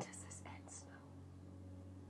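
A woman's quiet, breathy, near-whispered speech, a few short words in the first second, over a steady low hum.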